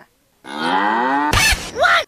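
A farm animal's long drawn-out call lasting about a second, followed by a brief burst of noise.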